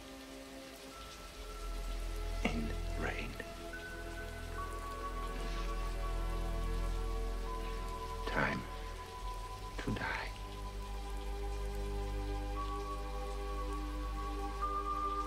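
Heavy rain falling steadily, under a slow synthesizer score of long held notes over a low drone that swells in a second or two in. A few brief sweeping sounds cut across it, twice about two and a half to three seconds in and twice around eight to ten seconds.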